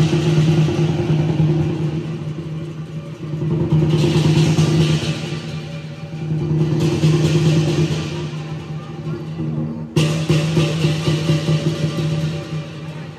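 Lion dance percussion (big drum, cymbals and gong) playing loudly in swelling waves about every three seconds, the cymbals clashing hardest at each peak.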